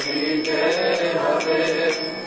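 A mantra chanted by voices, with small hand cymbals struck about four times a second and ringing between strikes.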